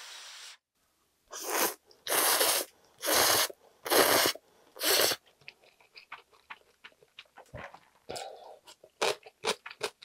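Instant ramyeon noodles being slurped in five loud pulls, each about half a second long, in the first half. Then comes the wet chewing of the mouthful, a run of small mouth clicks.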